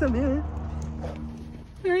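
Voices talking, with a low steady hum underneath that stops about three-quarters of the way through.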